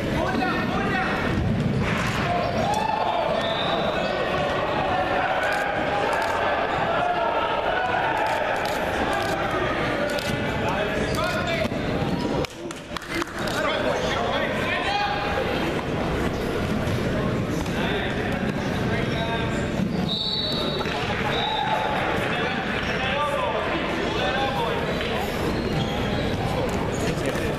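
People's voices calling and shouting in a large, echoing gymnasium, mixed with repeated short thuds. The sound drops briefly about twelve and a half seconds in.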